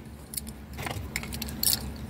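Car keys clinking together in a hand, a fixed-blade transponder key and a flip key, in several short, light jingles spread through the moment.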